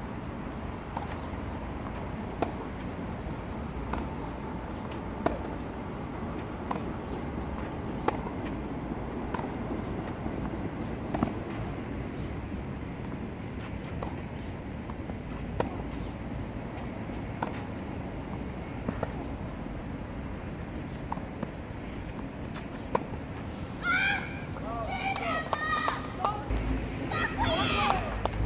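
Tennis rally on a clay court: sharp pops of rackets striking the ball and the ball bouncing, every second or two, over a steady outdoor background noise. Voices come in near the end.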